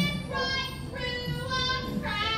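A high-pitched voice singing short phrases in a stage musical.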